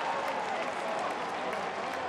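Ballpark crowd noise: a steady wash of applause and many voices from the stands.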